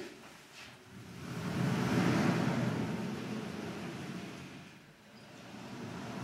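Sliding chalkboard panels being pushed along their tracks: a rumble that swells about a second in and fades out about five seconds in.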